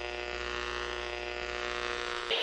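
Steady electronic drone: a low hum under a stack of held tones, unchanging in level.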